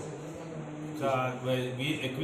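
A man's voice, with a short stretch of speech starting about a second in, over a steady low hum.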